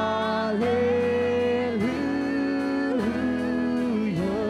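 Live worship band playing a slow song: strummed acoustic guitars and keyboard under long held melody notes, each a second or more, that dip and glide into the next pitch.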